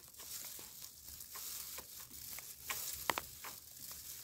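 Hex-socket bolt being turned out with an Allen key, giving a few faint clicks, the loudest pair about three seconds in, over a faint steady hiss. The clicks are the last thread of the bolt knocking as it lets go, the sign that the bolt is fully unscrewed.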